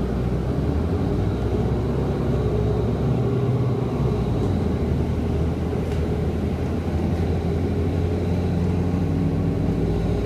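Cummins ISL9 diesel engine of a 2011 Orion VII 3G transit bus running as the bus drives, a steady drone heard from inside the cabin. Its pitch shifts slightly about four to five seconds in, and a faint steady high whine sits above it.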